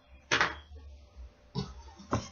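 Fabric rustling and swishing as a large piece of quilted cotton is folded and flipped over on a table. There is one swish about a third of a second in and a second, weaker one near the end, with a low handling rumble between them.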